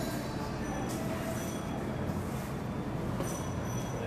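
Steady low room noise, with faint squeaks and scratches from a marker writing on a whiteboard.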